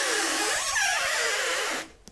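Wooden lower sash of an Andersen 400 Series double-hung window tilting in, rubbing and scraping against its vinyl jamb liner: a steady, kind of noisy rasp with faint squeaks, which cuts off just before the end.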